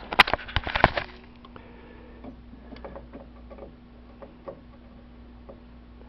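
Handling noise: a quick run of sharp clicks and knocks in the first second as the multimeter test leads and camera are moved about. After that come faint scattered ticks over a steady low hum.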